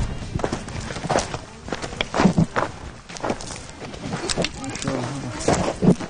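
Footsteps on a gravelly dirt path with a walking stick tapping the ground, in an uneven rhythm.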